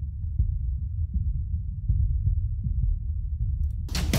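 Drum loop played through the FabFilter Pro-MB multiband compressor with only its lowest band soloed: dull, bass-only kick and low-end pulses, with everything above the low end cut away. Near the end the full-range loop comes back in, with its cymbals and snare.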